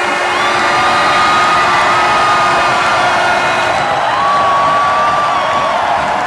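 Basketball arena crowd cheering and shouting loudly as the home team celebrates, with two long, high held tones riding over the roar, one in each half.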